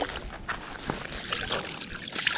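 Water splashing and trickling: hands scooping and rinsing in pond water, with irregular small splashes.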